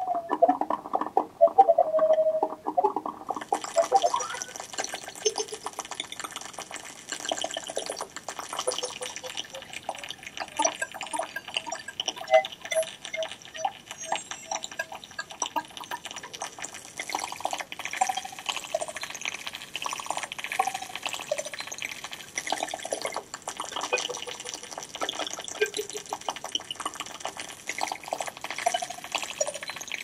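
Electroacoustic sound from a sensor-driven computer instrument: bubbling, trickling water sounds with many short pitched blips, joined about three seconds in by a bright hiss that carries on throughout.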